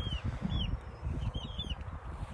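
Birds chirping: a scatter of short high chirps, several in quick runs, over a low rumble on the microphone.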